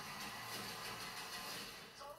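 Music from a television heard across a room, with no clear speech.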